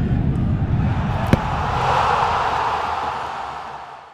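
Logo sting sound effect: a low rumble, a single sharp hit at about a second and a quarter in, then a rushing swell that fades away near the end.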